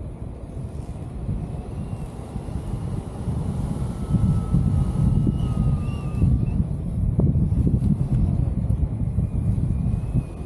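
Airflow buffeting the camera's microphone in flight, a steady low rumble that gets louder about four seconds in.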